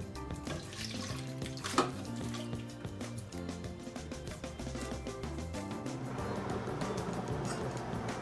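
Background music, with a single sharp tap about two seconds in, then a wet pouring sound from about six seconds in as canned diced tomatoes slide from a #10 can into a stainless steel stock pot.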